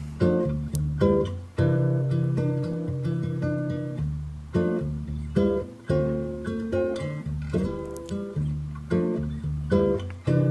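A guitar loop sample playing back in Ableton Live at its original 55 BPM: plucked chords and notes, each attack fading before the next. The clip now plays at its proper speed, no longer twice too slow.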